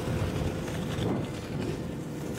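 Sled and snowmobile skis sliding over snow behind a quiet electric snowmobile: a steady, soft hiss, with a faint steady hum underneath.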